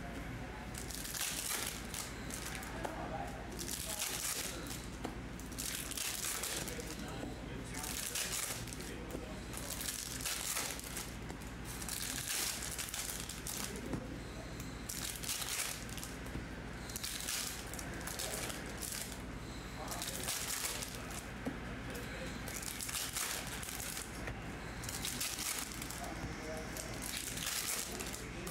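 Glossy Topps Chrome baseball cards being sorted by hand and dealt onto stacks on a table: a short papery swish of cards sliding against each other every second or two, over a low steady hum.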